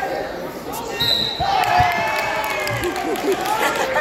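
Referee's whistle, one short steady blast about a second in, signalling a fall, over spectators' shouting and cheering, with a few dull thumps on the wrestling mat.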